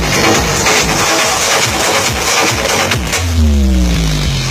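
Loud electronic dance music with a steady beat, played over a large outdoor sound system for a dancing crowd. About three seconds in, the beat gives way to a deep falling synth tone over heavy bass.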